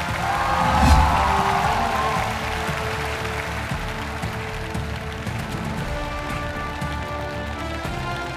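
Stage entrance music: a heavy bass hit about a second in, then held synth chords, with audience applause underneath.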